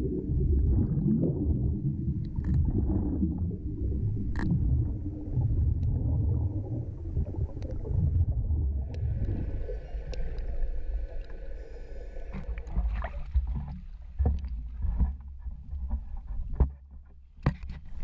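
Underwater sound around divers cutting a fishing net: a steady low rumble of water and exhaled bubbles, broken by scattered sharp clicks and knocks. For a few seconds in the middle a faint steady hum sits over it, and near the end the rumble drops away, leaving separate knocks.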